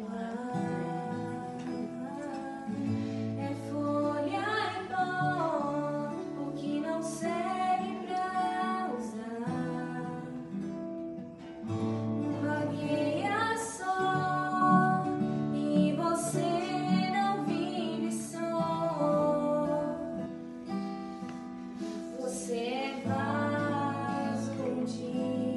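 A woman singing a Portuguese-language hymn, accompanied by two acoustic guitars that come in just after it begins.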